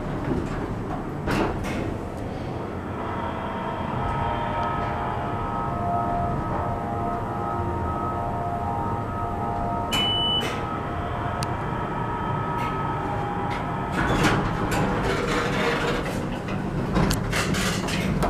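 Hydraulic elevator in motion: the pump motor hums steadily, with a whine of several steady tones while the car travels. There is a short high beep about ten seconds in, and clattering of the sliding doors from about fourteen seconds.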